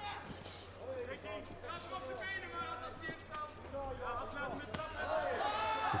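Kickboxing strikes landing: a few sharp thuds of gloves and kicks on the body, under shouting voices in the arena.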